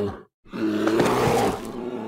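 A man's short sigh, then a loud, sustained cartoon take-off roar with a steady low hum under it as the animated character shoots up into the sky.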